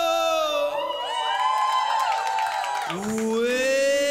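Live soul-pop band with lead vocal: a long held sung note gives way to about two seconds of several voices whooping and cheering over the band. About three seconds in, the lead voice slides up into another long held note.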